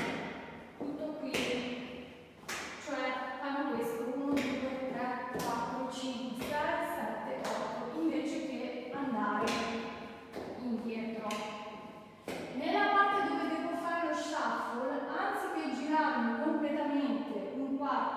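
A woman talking in Italian, with a few taps and thumps of cowboy-boot steps on the floor.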